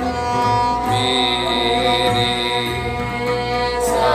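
Sikh devotional music in Raag Gauri Cheti: bowed string instruments, among them a peacock-shaped taus, play sustained melody over a steady drone, with voices singing the shabad.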